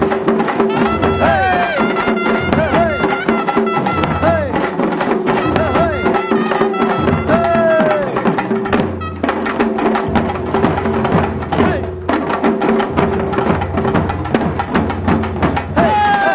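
Tamil parai frame drums beaten with sticks by a group in a fast, steady rhythm, with a large barrel drum, under a wind instrument playing a melody that slides up and down in pitch over a steady held note.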